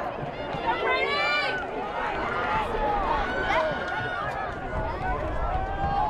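Several voices shouting and calling out over one another, with one loud, drawn-out shout about a second in.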